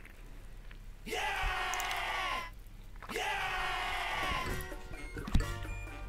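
Background music with an edited-in sound effect played twice, two near-identical tones that swoop up and then slide down in pitch, each about a second and a half long. A short sharp click comes near the end.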